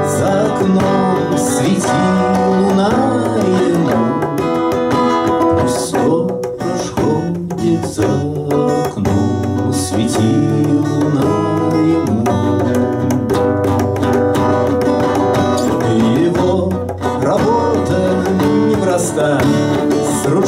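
Acoustic guitar played as song accompaniment, continuous, with no break.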